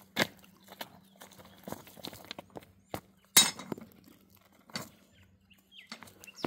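Rounded stones clacking against each other as they are picked up, dropped and stepped on in a bed of pebbles: scattered sharp knocks at irregular intervals, the loudest about halfway through.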